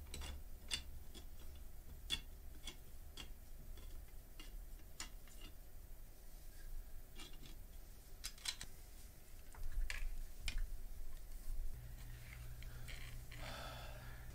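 Faint, irregular small clicks and scrapes of hands handling a plastic lamp tube and feeding a thin wire through it, a little busier about two-thirds of the way in.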